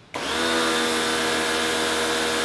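Electric pressure washer starting up as the trigger is squeezed a fraction of a second in, then running steadily: a constant motor hum under the hiss of the water jet spraying onto algae-covered concrete.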